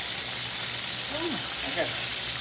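Chicken wings sizzling steadily in hot oil in a frying pan during their second fry, with a low steady hum underneath.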